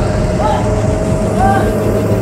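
Film-trailer sound design: a loud, steady low rumbling drone with one held tone running through it. Two short rising-and-falling voice-like cries come about half a second and a second and a half in.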